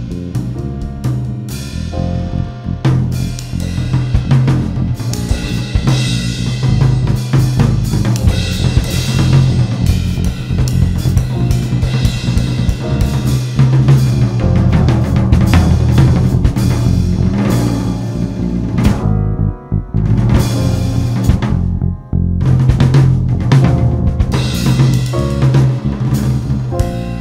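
Jazz-fusion band playing, with the drum kit to the fore: busy snare, bass drum and cymbal strokes over a steady bass line, with two brief breaks late on.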